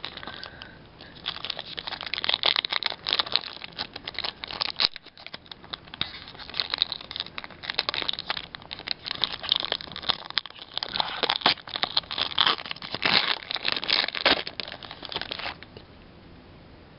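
Foil wrapper of a Pokémon trading-card booster pack crinkling and tearing as it is opened by hand. The crinkling runs almost without a break from about a second in and stops shortly before the end.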